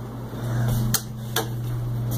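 Steady low electrical hum of a hydraulic elevator, growing louder about half a second in, with two sharp clicks a little under half a second apart near the middle.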